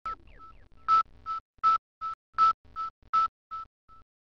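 Electronic beeps at a single pitch repeating about three times a second, alternately louder and softer, like a transmitted signal. A few quick falling chirps come first, and the beeps fade to faint blips near the end.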